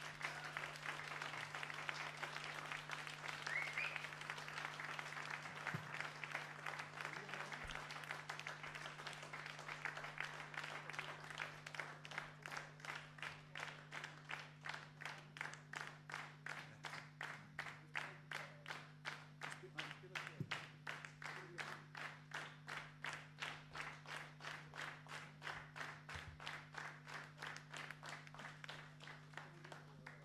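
Audience applause after a song ends. The clapping settles into rhythmic clapping in unison at about two claps a second.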